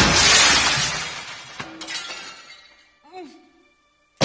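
Glass shattering as a body falls back into a mirror: a loud crash that fades over about two seconds, with a few small tinkles of falling pieces. A short sliding tone follows near the end, then a moment of near silence.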